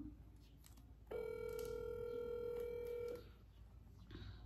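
A phone's outgoing-call ringing tone through its loudspeaker: one steady beep lasting about two seconds, starting about a second in. The other end has not yet answered.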